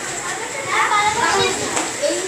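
Children's voices chattering in a classroom, one high voice standing out about a second in.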